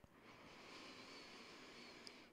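Faint, steady inhale, an even airy hiss lasting about two seconds, taken on the cue to breathe in during a seated yoga breathing exercise.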